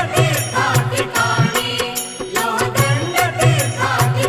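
Marathi devotional bhajan music to Vitthal: a melody line over a steady percussion beat.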